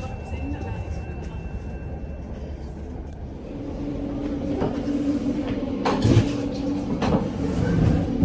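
Inside a moving Stadler MIKA electric regional train: the low rumble of the running train. About halfway through, a steady hum sets in as the toilet cubicle is entered, followed by a few sharp knocks of handled fittings.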